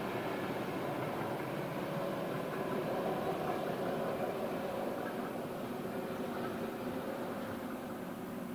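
Distant electric passenger train of double-deck coaches with an ÖBB class 1144 locomotive running past: a steady rumble of wheels on rail with a faint hum, a little louder about three seconds in.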